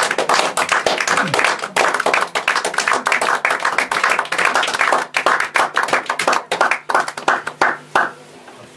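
A rapid, irregular run of sharp percussive taps, like hand claps, that cuts off suddenly near the end.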